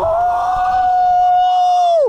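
A man's long excited yell: one steady 'oooh' held on a high note for about two seconds, dropping away at the end.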